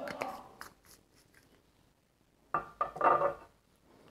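Small glass bowl being handled: a glass bottle and a wooden spoon clinking and tapping against it as olive oil is poured and stirring begins. There is a quick cluster of clinks in the first second, then another short burst of clatter and scraping about two and a half seconds in.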